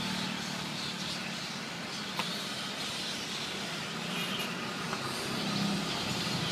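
Steady low hum of road traffic or an engine, with faint scattered high squeaks and one sharp click about two seconds in.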